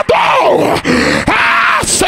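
A man shouting into a handheld microphone: two long, drawn-out cries, the first falling in pitch, the second held steady.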